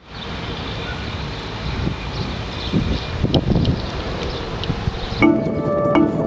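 Steady outdoor ambience with a wind-like rush and faint traffic-like rumble, then, about five seconds in, background music with short, clear pitched notes begins.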